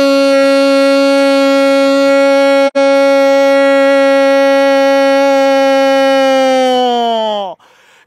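A football commentator's long held goal cry, "gooool", sustained on one steady pitch for about seven seconds and falling away in pitch as it ends, with a split-second break about three seconds in.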